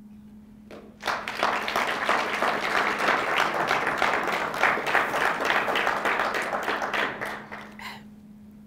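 Audience applauding, starting about a second in and dying away near the end.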